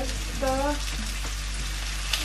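Sliced mushrooms and pepper frying in hot olive oil in a pan, a steady sizzle.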